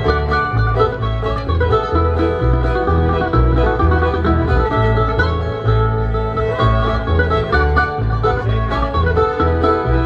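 Bluegrass string band playing an instrumental passage without singing: mandolin, fiddle and acoustic guitar over a steady upright bass line of about two notes a second.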